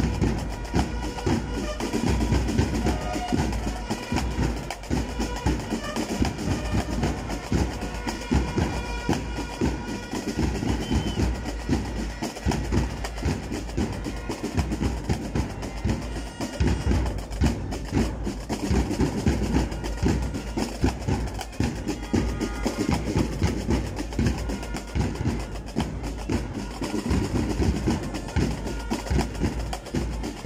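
Marching-band music with snare and bass drums keeping a steady beat.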